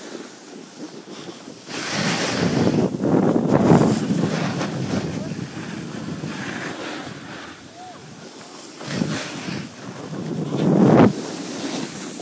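Wind buffeting the phone's microphone while riding downhill, mixed with the hiss and scrape of snow under the rider. It swells loudest about two to four seconds in and again shortly before the end.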